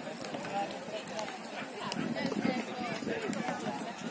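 Overlapping voices of several people talking and calling out at once, with a few brief sharp clicks.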